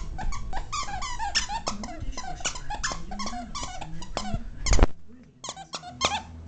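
Dachshund chewing a plush dinosaur dog toy, working its squeaker in a fast run of short, high squeaks, several a second. The loudest squeak comes near the end, followed by a brief pause and a couple more squeaks.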